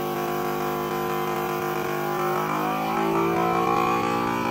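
FoodSaver vacuum sealer's pump running steadily as it sucks the air out of a bag. About two and a half seconds in, its pitch shifts and it gets a little louder as the bag pulls tight.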